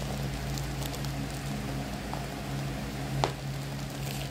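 Plastic parcel wrapping rustling and crinkling as it is handled and opened, with a faint tick about two seconds in and one sharp snap about three seconds in.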